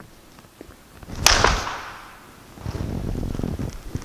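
A single sharp clack of wooden practice swords (bokken) striking each other about a second in, with a short echo after it. Near the end comes a spell of shuffling footsteps on a wooden floor.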